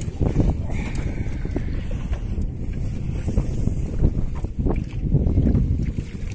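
Wind rumbling on the microphone, with irregular knocks of choppy water slapping against an aluminium boat's hull.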